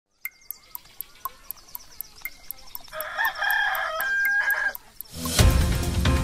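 Clock ticking fast, about four ticks a second, with a rooster crowing from about three seconds in; loud theme music starts near the end.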